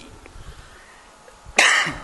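A man coughs once, sharply, about one and a half seconds in, after a short quiet pause.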